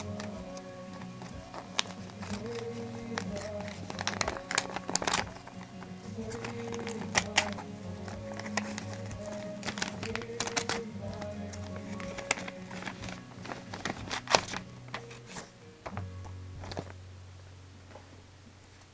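Soft background music of held notes under paper crinkling and rustling as a folded paper mailer is unfolded by hand. The music stops about two seconds before the end, and the sound fades there.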